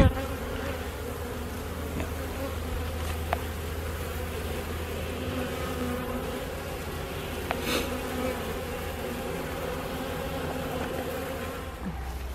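Honeybee colony humming steadily from an opened hive, the bees of the autumn cluster exposed on the frames between the boxes. A couple of faint clicks sound over the hum.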